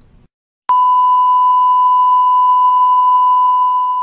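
Television broadcast sign-off tone: a single steady, pure high beep. It starts abruptly about two-thirds of a second in, after a moment of silence, and holds unchanged at full loudness.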